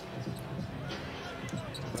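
A basketball being dribbled on a hardwood court, heard faintly.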